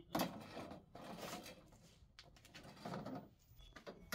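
Faint clatter and scraping of thin metal trellis tubes being carried and set down on concrete, in a few short bursts.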